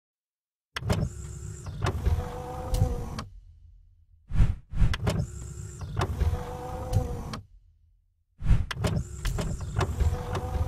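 Logo-intro sound effect of a motorised mechanism whirring and sliding, with clicks and clunks. It plays three times: starting about a second in, again around four and a half seconds, and again near the end.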